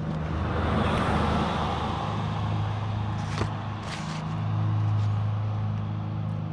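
Street traffic: a passing vehicle's noise swells over the first second or two and fades over a steady low engine hum, with a second, smaller swell near the end. Two light clicks a little past the middle.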